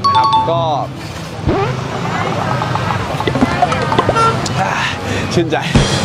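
Busy city street traffic, cars and motorcycles passing, with snatches of music over it.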